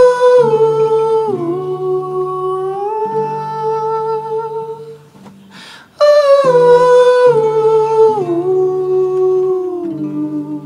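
Wordless vocal melody over an acoustic guitar: two long held phrases, each starting high and stepping down in pitch, with low guitar notes sounding underneath.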